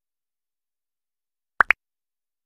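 Two quick pop sound effects about a tenth of a second apart, the second higher in pitch: a cartoon double-click as the animated cursor opens a folder window.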